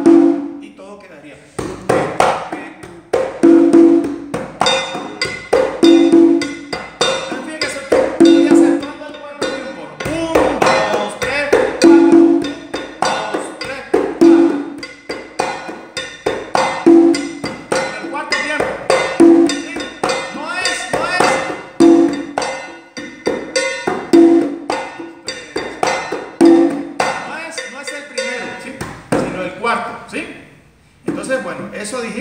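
Congas played by hand in a salsa tumbao-style pattern: a ringing open tone recurs about every two and a half seconds, with quicker, sharper strokes filling the time between.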